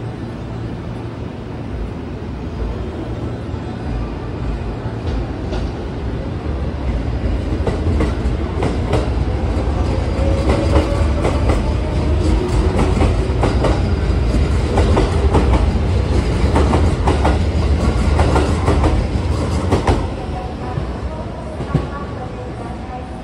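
JR West 207 series electric train departing and accelerating past, its low running rumble building up with a faint rising motor whine and wheels clattering over rail joints and points. The sound falls away near the end as the train clears.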